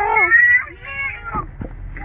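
A young child's wordless high-pitched cries, two drawn-out whiny calls, the first falling in pitch at its end.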